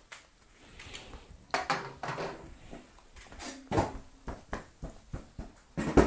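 Handling noises: a large circuit board is set down on a wooden tabletop, followed by scattered knocks and taps and two brief squeaks.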